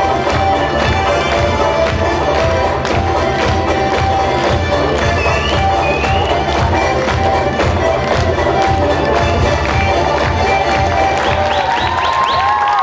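Fast lezginka dance music played loud, with a quick, steady drumbeat under a held melody line, and an audience cheering along.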